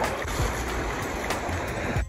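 Sea water sloshing and lapping close to the microphone, with a low rumble underneath and a few brief splashes.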